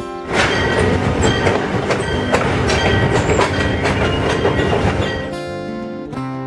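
Train rolling on rails: loud rolling noise with irregular sharp clacks from the wheels. It starts suddenly just after the beginning and falls away about a second before the end. Acoustic guitar music is heard before it comes in and again after it fades.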